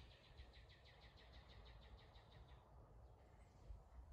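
A faint bird trill: a rapid, even series of about nine high notes a second that stops about two and a half seconds in, over a low background rumble.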